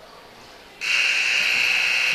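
Gymnasium scorer's-table horn sounding a steady, high-pitched buzz that starts suddenly just under a second in, the signal for substitutes to check in.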